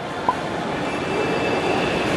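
Steady background hum of a busy indoor shopping centre, with a faint steady high tone over it and a single short tick about a quarter of a second in.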